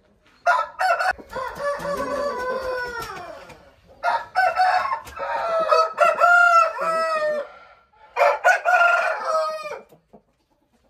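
Aseel roosters crowing: three long crows about four seconds apart, the first drawn out and falling in pitch at its end.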